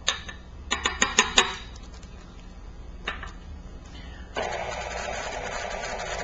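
A few sharp clicks and knocks in the first second and a half, then about four seconds in a stand mixer switches on and runs steadily at medium speed, beating the dissolved gelatin into the whipped chantilly cream.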